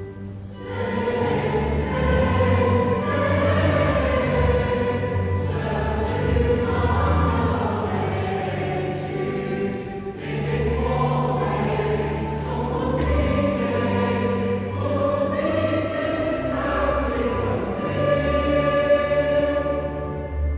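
A choir sings a hymn over sustained organ chords. The voices come in about half a second in, after an organ introduction, and ring in the reverberant cathedral.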